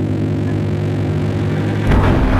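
Deep, steady, droning rumble of a cinematic sound effect for a planet-collision animation, breaking into a sudden, louder crash near the end.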